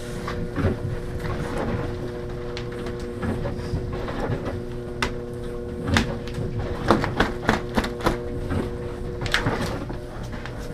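Steady machine hum in a small workshop, with scattered knocks and clicks of handling; a quick run of sharp clacks comes about seven to eight seconds in.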